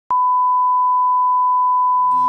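Steady 1 kHz reference test tone of the kind that goes with broadcast colour bars, starting with a click a moment in and holding one unchanging pitch.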